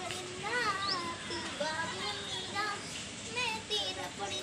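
Children's high voices chattering and calling out in many short bursts.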